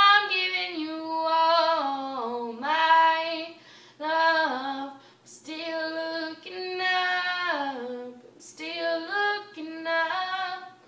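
A young girl singing unaccompanied, a cappella, in long held phrases whose pitch steps down at the end of each, with short pauses for breath between them.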